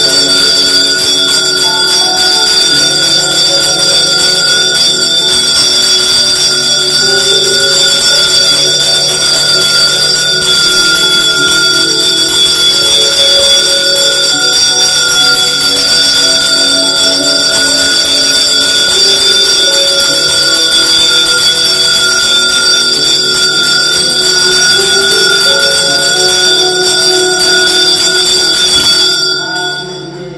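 Temple bells ringing continuously and loudly through the aarti, with lower notes shifting underneath. The ringing stops abruptly about a second before the end.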